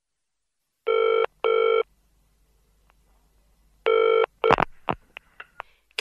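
Telephone ringing in a double-ring pattern: two short rings close together, a pause, then a third ring. A few sharp clicks follow as the receiver is picked up.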